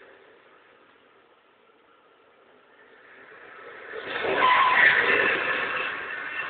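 A car coming in fast and braking hard, tyres squealing as it skids to a stop. The sound builds up over a couple of seconds and is loudest about five seconds in.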